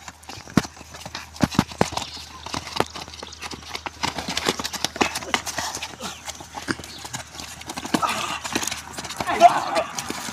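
Scuffle of several men fighting at close quarters: quick, irregular slaps and thuds of blows and grabs landing, with bare and shod feet shuffling on wet concrete. The loudest hit comes about nine and a half seconds in.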